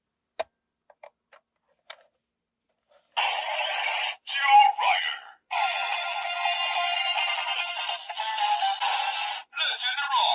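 A few plastic clicks as parts of a Kamen Rider toy weapon are moved. About three seconds in, the toy's small speaker starts playing electronic music with a synthesized voice and sound effects, with brief breaks.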